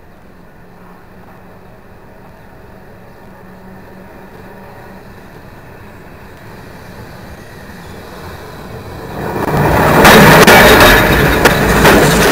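Vintage Milan 'Ventotto' tram approaching on its rails. The rumble builds slowly, then grows loud as the tram passes close by over the last two to three seconds.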